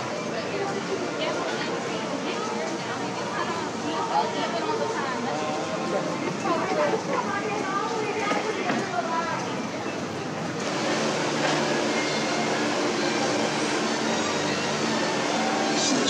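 Indistinct chatter of several people talking at once over a steady background hum; the background changes abruptly about ten seconds in.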